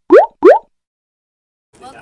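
Two quick, loud cartoon 'bloop' pop sound effects, each a short upward glide in pitch, about a third of a second apart.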